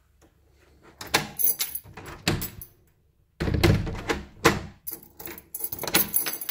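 A plastic-framed door's handle and lock being worked: clusters of clicks and clunks with keys jangling in the lock, a first burst about a second in and a louder one from about three and a half seconds.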